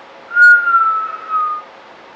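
A single whistled note, clear and steady, drifting slightly down in pitch over about a second and a half, with a short click just before it.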